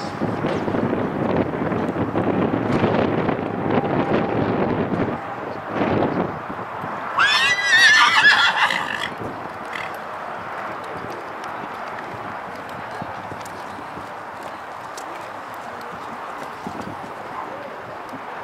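A horse neighs loudly about seven seconds in: one whinny of about two seconds that climbs in pitch and then wavers.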